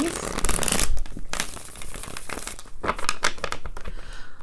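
A tarot deck riffle-shuffled on a table: a dense rapid flutter of cards in the first second, then softer rustles and taps as the deck is gathered and squared.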